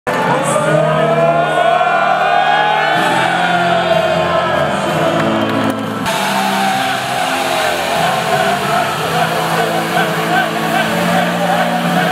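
A group of men shouting and cheering together in celebration over loud music, their long yells sliding up and then down in pitch. The sound cuts abruptly about halfway through to another stretch of group shouting over the music.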